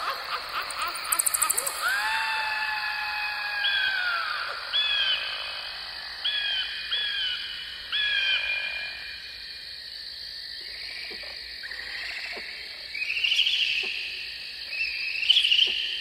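Spooky animal-like sound effects, likely played by the Halloween yard display's props. A long drawn-out wailing call about two seconds in is followed by a run of short chirping calls. After a quieter stretch come two rougher, buzzier calls near the end.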